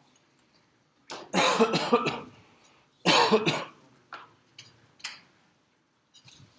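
Two short bursts of a person's voice, one about a second in with several quick pulses and a shorter one around three seconds, followed by a few faint clicks.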